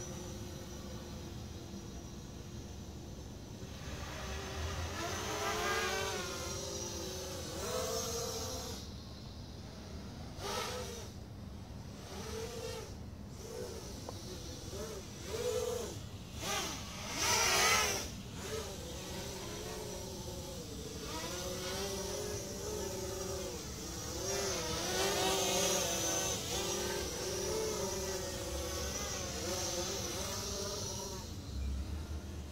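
Blade 200 QX quadcopter's motors and propellers buzzing in flight, the pitch rising and falling constantly with throttle changes. Several louder surges come and go, the strongest a little past the middle.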